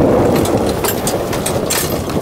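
Electric off-road golf cart pulling away across snow: knobby tyres crunching and crackling over the snow, starting suddenly, with no engine tone.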